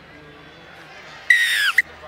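Referee's whistle: one loud blast of about half a second, sliding down in pitch as it ends, followed at once by a short pip, over a faint crowd.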